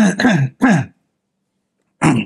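A man coughing three times in quick succession into his hand to clear his throat, all within about the first second.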